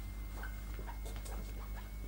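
Faint scattered footsteps and rustling of two people walking across a stage floor, over the steady low hum and faint high whine of an old broadcast recording.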